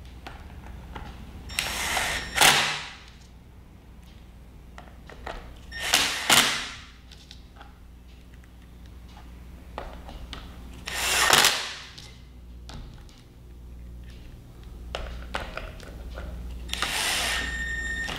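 Cordless drill-driver running in four short spurts of about a second each, driving the screws back into a vacuum floor tool, with light clicks of handling between.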